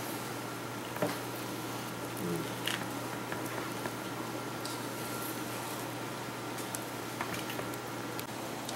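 Quiet kitchen room tone: a steady low hum and hiss, with a few faint soft clicks of handling.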